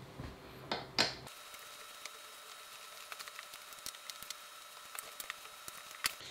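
Faint scattered clicks and light taps of screws and hand tools on the gaming chair's metal hardware as the backrest screws are worked, with one louder knock about a second in.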